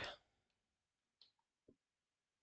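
Near silence with two faint, short clicks about half a second apart: a computer keyboard and mouse as the date in the code is retyped and the code is run.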